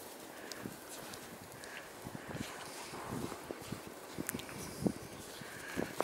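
Footsteps walking in snow: a run of irregular soft steps, with one or two a little louder near the end.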